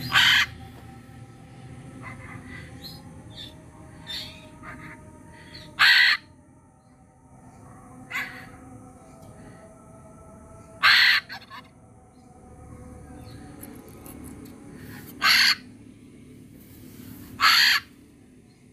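Blue-and-gold macaw giving five loud, harsh squawks spaced a few seconds apart, with fainter chirps between them.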